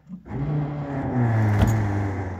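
The 1957 Ford Fairlane's power convertible top motor starting up and running with a steady hum as the top begins to lower. Its pitch drops slightly about a second in, and there is a sharp click about a second and a half in.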